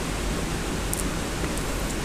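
Steady hiss of background noise, even and unchanging, with a faint tick about a second in.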